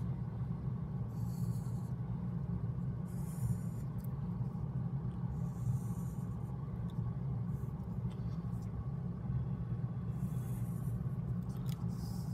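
Black felt-tip marker drawing straight lines on paper: several separate short, scratchy strokes, each under a second, over a steady low hum.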